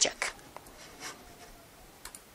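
A word of speech ending right at the start, then faint clicks from a computer keyboard and mouse in a quiet small room.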